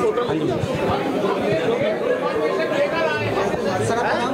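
Crowd chatter: many people talking at once, overlapping voices with no one voice standing out.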